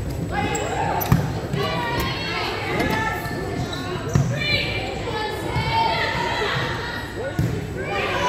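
A volleyball rally in a gymnasium: the ball is struck sharply about a second in, again about four seconds in and once more near the end, with players' voices and shouts and high squeaks, likely shoes on the hardwood floor, echoing in the large hall.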